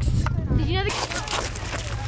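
A person's voice briefly, then a rough rushing noise with a low rumble from about a second in, as of wind or handling on the phone's microphone outdoors.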